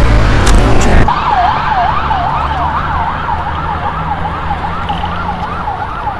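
Emergency vehicle siren in a fast yelp, its pitch rising and falling about two and a half times a second and slowly fading, starting after a loud low rumble in the first second.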